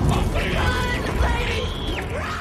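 Film soundtrack: a person screaming in high, wavering cries over a steady low rumble, the cries ending in a falling glide near the end.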